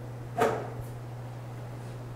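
A steady low hum in a quiet room, with one short sharp click-like sound under half a second in that fades quickly.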